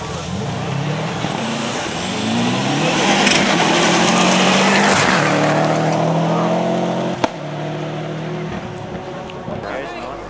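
A rally car approaching and passing close at speed on a gravel stage: the engine note climbs, is loudest with a rush of tyre and gravel noise about three to five seconds in, then drops in pitch and fades as the car goes away. A single sharp click about seven seconds in.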